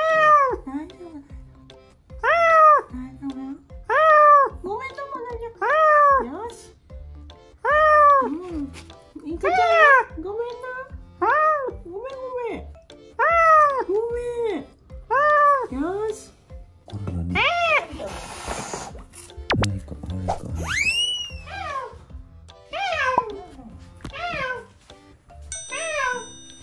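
Frightened, cornered domestic cat yowling again and again while a gloved hand reaches for it. The long wails rise and fall in pitch, coming about every one and a half seconds, with a short hissing rush about two-thirds of the way through.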